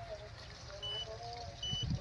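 Two short, high electronic beeps about three-quarters of a second apart, over faint voices in the background.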